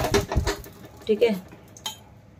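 Steel kitchenware clattering: a few quick knocks and clinks of a frying pan and a steel spoon against a steel cooking pot in the first half second, and one more clink near the end.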